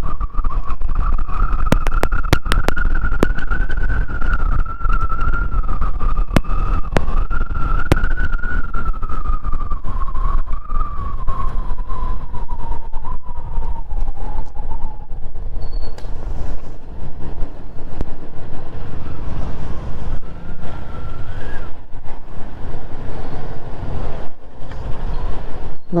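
Kawasaki Z400 parallel-twin being ridden under heavy wind buffeting on the helmet microphone, with a high whine from the bike that falls in pitch from about ten seconds in as it slows down and then fades.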